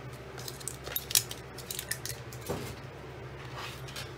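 Hands handling cardstock pieces and small craft tools on a cutting mat: a run of light clicks, taps and rustles, the sharpest about a second in.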